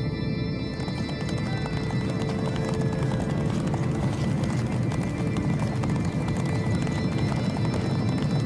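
Background music over the hoofbeats of a team of horses drawing sleighs, with a horse whinnying briefly.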